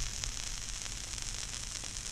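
Steady surface hiss and crackle of a 1940 Decca 78 rpm shellac record, with a few faint clicks, as the Garrard turntable's stylus runs in the lead-in groove before the music starts.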